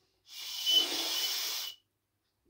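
A long breathy hiss blown from a person's mouth, lasting about a second and a half, with a faint whistling tone in it.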